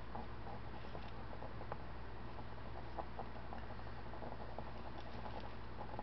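Fine paintbrush working paint onto a canvas, making many small scratchy ticks, over the steady low hum of an electric fan.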